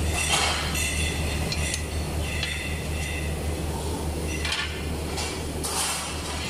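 Two freshly snapped strips of ceramic tile clinking as they are pulled apart and lifted off a manual tile cutter: several short, light clinks spread through the seconds.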